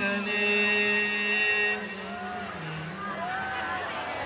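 A man singing a sholawat line solo without accompaniment through the hall's loudspeakers: one long held note for under two seconds, then quieter short phrases that rise and fall in pitch.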